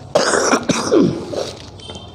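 A man coughing and clearing his throat into a close microphone: a few harsh bursts within the first second and a half, then quiet room tone.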